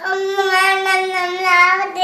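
A toddler singing one long, nearly steady note.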